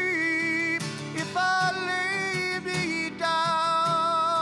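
A man singing three long held notes over his own acoustic guitar accompaniment.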